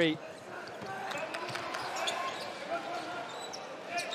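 A basketball being dribbled on a hardwood court over a steady arena crowd murmur.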